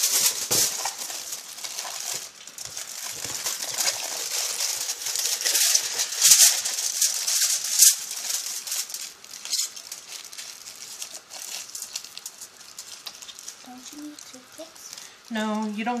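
Aluminium foil crinkling and crackling as it is folded and crimped by hand around a food parcel. It is loudest in the first half and settles to quieter rustling after about ten seconds.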